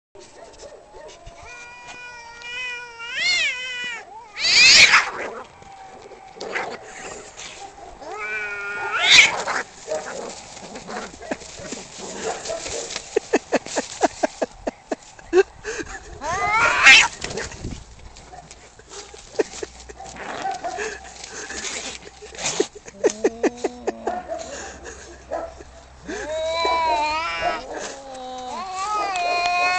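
Two cats, a black-and-white cat and an orange tabby, in a standoff and fight: long rising, wavering yowls, with three loud harsh hisses as the loudest sounds and a stretch of quick pulsing growls in the middle.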